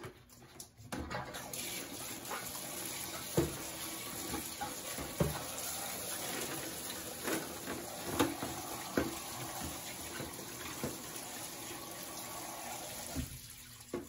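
Bathtub faucet running water into a plastic bucket of bleach-soaked scissors, rinsing them. Several sharp knocks and clinks come as the scissors are stirred against the bucket. The water starts about a second in and stops shortly before the end.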